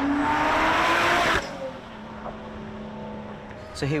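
Supercharged 3.5-litre V6 of a Lotus Exige S Roadster accelerating, its note rising steadily in pitch. The sound cuts off abruptly about a second and a half in, and a much quieter steady hum follows.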